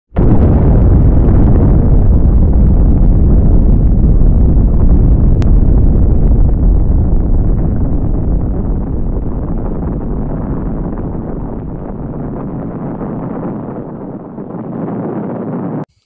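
A deep, rumbling explosion sound effect: it starts suddenly and loud, holds for several seconds, then slowly fades and cuts off just before the end.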